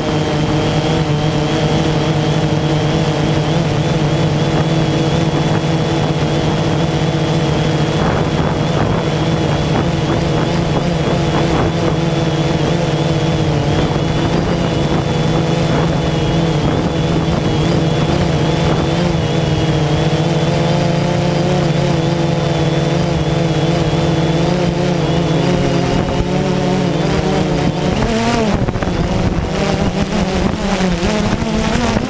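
DJI Phantom 2 quadcopter's four electric motors and propellers, heard from the camera slung beneath it: a steady buzzing drone with a clear pitch. Near the end the pitch wavers and shifts as the motors change speed.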